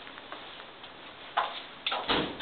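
A few faint taps, then two sharp clicks about half a second apart near the end.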